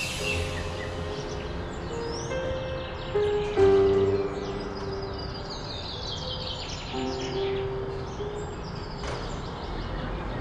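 Soft background music score of long held notes, with birds chirping in quick series over it.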